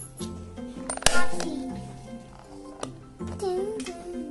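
Background music with steady notes, broken about a second in by one sharp clink, the loudest moment, as the plastic kit parts are handled. A child's voice sounds briefly near the end.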